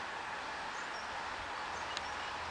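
Steady outdoor background hiss with no distinct event, and a few faint, brief high chirps.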